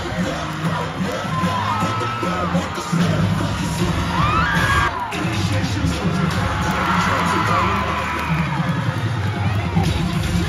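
Cheerleading routine music with a heavy pounding beat, played loud over a crowd cheering and letting out high screams and whoops at intervals.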